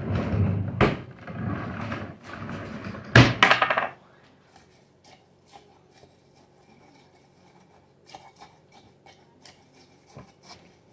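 Rustling handling noise with two sharp knocks for the first few seconds, then faint, scattered light ticks of a thin wooden stick against a glass mason jar as plantain leaves in oil are stirred.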